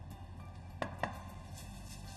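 Two short, sharp knocks of kitchenware on the counter, about a quarter second apart, as patty mixture is handled at the worktop.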